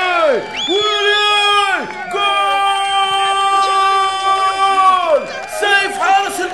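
A football commentator's long drawn-out goal shouts: a string of held cries, the longest about three seconds, celebrating a goal from a last-minute corner.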